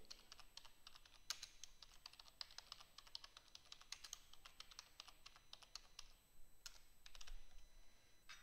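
Faint typing on a computer keyboard: a quick run of key clicks with a couple of brief pauses.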